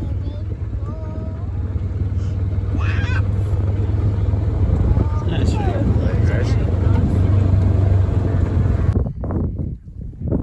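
A farm vehicle's engine running with a steady low drone while it drives across a paddock, with a few short calls heard over it. The sound cuts off abruptly about nine seconds in.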